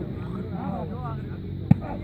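Men's voices calling and talking around a dirt volleyball court, with one sharp slap of a hand striking a volleyball near the end.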